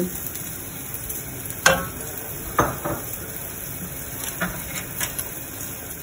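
Wooden spoon stirring tomato sauce in a stainless steel saucepan over a steady sizzle of eggplant slices frying on a griddle, with two sharp clinks of utensil on pot about a second apart near the two-second mark.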